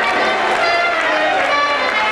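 A film's orchestral song soundtrack playing loudly in a movie theatre, with the audience's many voices singing and calling along over it.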